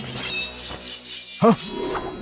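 Fight-scene sound effects over music: a metallic crash that rings on at the start, and a short sharp yell about one and a half seconds in.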